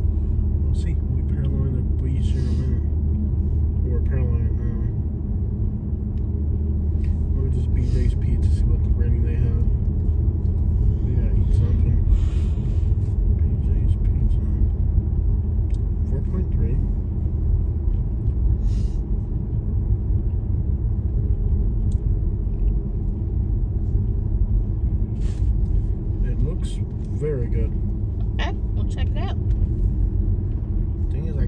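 Car driving along a paved road, heard from inside the cabin: a steady low road and engine rumble, with scattered faint clicks and bursts of hiss.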